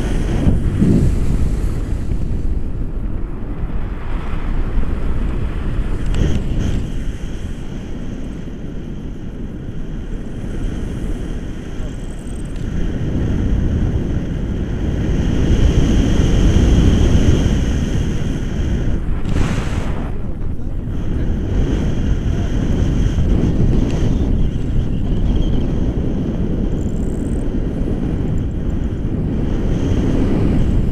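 Airflow buffeting an action camera's microphone during a tandem paraglider flight: a loud, low rumbling wind noise that swells about halfway through and then eases.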